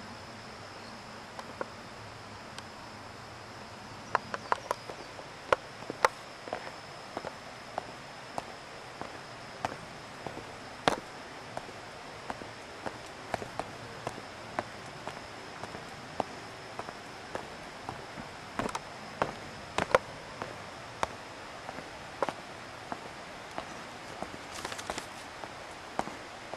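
Footsteps on a stone-paved forest path, sharp irregular steps about one or two a second, over a steady faint hiss and a thin, high, steady tone.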